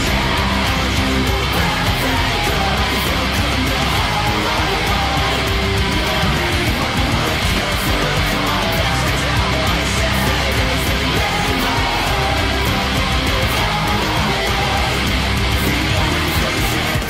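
Heavy metal: a down-tuned electric guitar in drop B, played through an amp simulator, over a loud full-band backing with drums.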